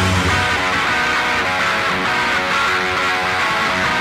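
A heavy rock song in a stripped-back passage: electric guitar playing a quick run of picked notes, without the heavy drums and bass.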